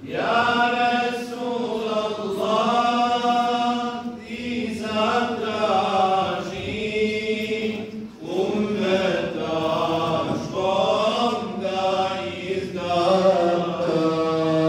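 Unaccompanied male religious chanting: long, melismatic phrases that glide up and down in pitch, broken by short pauses for breath.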